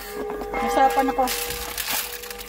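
Voices talking, and near the end a short crinkle of the paper wrapper around a pastry being handled.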